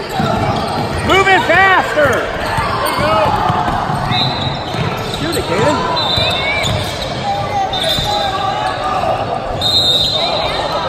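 Basketball dribbled on a hardwood court with short high sneaker squeaks, echoing in a large gym, while voices shout, most loudly about a second in.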